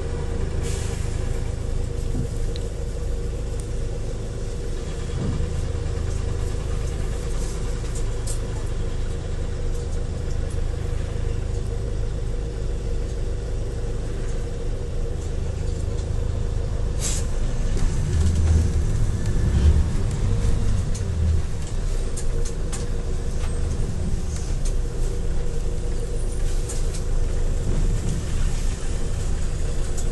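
Hyundai New Super Aerocity city bus engine running at idle, heard from inside the cabin as a steady low hum. There is a short hiss of air about 17 seconds in, and then the engine gets louder as the bus moves off slowly in traffic.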